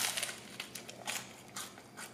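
Biting into and chewing a crisp beer-battered, deep-fried mushroom fillet: a loud crunch at the start, then a scatter of smaller crackles as the fried batter breaks up.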